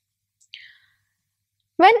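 A pause in a woman's speech: near silence with one short, faint intake of breath about half a second in, then her voice starting again near the end.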